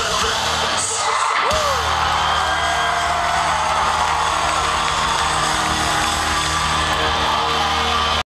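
Live post-hardcore band playing loud, with distorted guitars and drums in a boomy concert mix, and crowd members yelling and whooping. The low end drops out for about half a second a second in, then the band comes back in with a sustained wall of sound.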